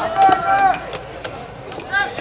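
High school baseball players shouting long drawn-out calls during infield fielding practice, followed by a few sharp cracks of the ball against leather gloves and bat.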